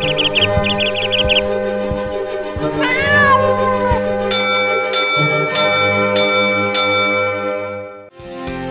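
Intro music with cartoon sound effects: two quick runs of high chick chirps in the first second and a half, a cat's meow around three seconds in, then five bell-like chime strikes about 0.6 s apart.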